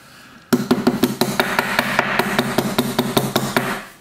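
Elk hair being evened in a hair stacker, the stacker tapped rapidly against the tying bench: a quick, steady run of sharp taps starting about half a second in and stopping just before the end, with the bench ringing under them.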